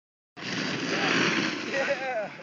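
Loud rushing noise of riding downhill on a snow slope, mostly wind on the phone's microphone, starting suddenly about a third of a second in. A short voice-like call comes near the end.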